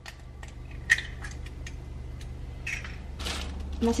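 Light clicks and clatters of kitchen containers and utensils being handled on a counter during food preparation, over a steady low hum, with a short rustle near the end.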